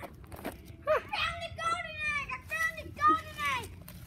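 A child's high voice talking, the words unclear.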